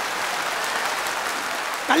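Large audience applauding, a steady clapping.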